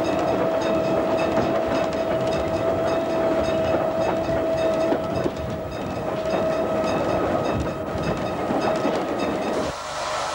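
Train hauled by the steam locomotive No. 673 "Maude" running along the line, heard from on board: clickety-clack of wheels over rail joints under a steady whine. The sound cuts off sharply near the end.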